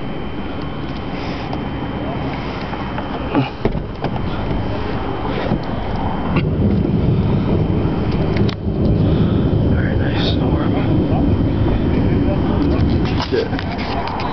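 Low rumbling noise of an approaching thunderstorm, with wind and rumble, growing louder about six seconds in, with a few short knocks.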